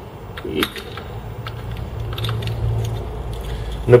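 Small metallic clicks and light rattles of a spark plug socket and extension as a spark plug is threaded by hand into a Honda Steed's cylinder head. A low hum underneath grows louder in the second half.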